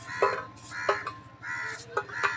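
A crow cawing repeatedly, about three harsh caws, with a few sharp taps as apple pieces cut with a knife drop onto a steel plate.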